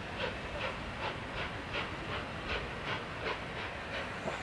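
LNER A4 Pacific Sir Nigel Gresley and its coaches running along the valley at a distance: a steady, even beat about two and a half times a second over a low rumble.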